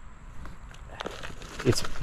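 Soft rustle of a hand scooping loose potting soil around a plastic tree pot, with one light tick about a second in.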